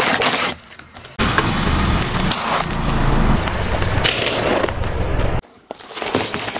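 A car tyre rolls slowly over paper cups on asphalt, with car engine and tyre noise close to the ground for several seconds and a few sharp crunches.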